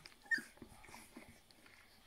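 A nursing Rhodesian Ridgeback puppy gives one short, high squeak, then faint, rapid smacking of suckling at the teat, about four or five a second.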